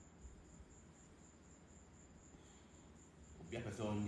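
Near silence with a faint, high-pitched chirp pulsing evenly about five times a second, like an insect.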